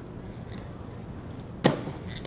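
One sharp clack of an inline skate's hard frame and wheels slapping down on a concrete ledge, about a second and a half in, over a steady low rumble of background noise.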